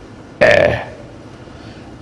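A man's brief hesitation sound, a short 'eh' about half a second in, amid low room tone.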